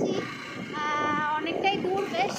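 A high voice singing, holding one note for well under a second about a second in, followed by a few shorter sung fragments.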